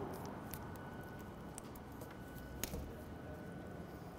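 Quiet, faint wet squishing and a few small clicks from gloved hands working a raw spatchcocked chicken open on a wooden board, over low room tone with a faint steady hum.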